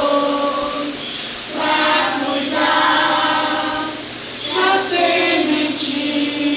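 A group of young children singing a song together in unison, in sustained phrases with short breaths between them about a second and a half in and again near 4.5 seconds.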